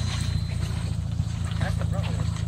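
Steady low engine rumble of a half-cut car, the front section of a front-wheel-drive car, running as it rolls slowly. Faint voices are heard near the end.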